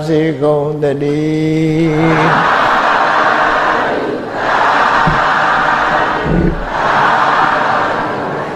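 A monk's voice intones a chant in long held notes, ending about two seconds in. Then a congregation chants together three times in a row, the 'sadhu, sadhu, sadhu' response that closes a Buddhist sermon.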